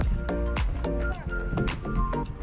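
Background music: an instrumental track with sustained notes over a steady beat.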